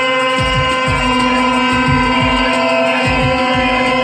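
Music: a held, droning chord over a regular low drum beat.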